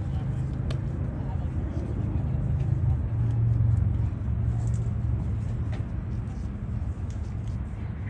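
Outdoor background of a steady low rumble, like vehicle traffic or a running engine, which shifts about three seconds in. Faint distant voices and a couple of light clicks sit over it.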